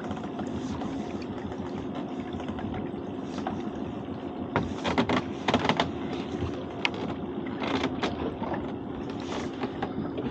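Water splashing and streaming off a lobster pot as it is hauled up out of the sea by hand, in several short bursts from about halfway through, over a steady low hum.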